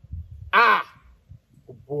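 A man's loud, drawn-out exclamation of delight, "Ha!", rising then falling in pitch, about half a second in; near the end he starts speaking again.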